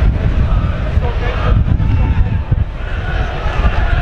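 Low, irregular wind rumble on the microphone at a football ground, over a crowd's murmur with scattered voices and shouts.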